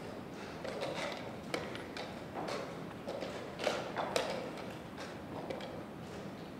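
Scattered sharp clicks of chess pieces and clock buttons from boards around a tournament playing hall, a few at a time, with a small cluster about four seconds in.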